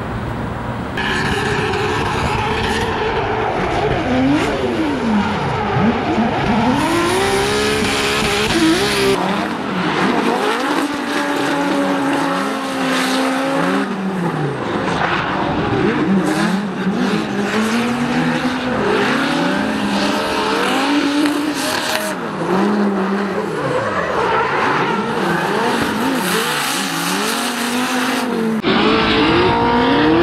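Drift cars sliding through a corner, their engines revving hard and dropping back again and again as the throttle is worked, over tyre screech. After a quieter first second the cars come in, and the sound runs on in several passes joined by abrupt cuts.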